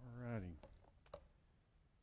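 A man's brief wordless vocal sound, rising in pitch, then a few faint clicks of a tablet or laptop being handled on a lectern, two of them close together about a second in.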